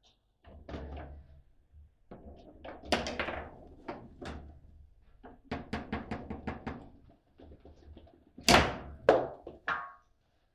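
Foosball table in play: the ball and the plastic figures on steel rods knocking and clacking, with a run of quick taps in the middle and a sharp, loud hit about eight and a half seconds in.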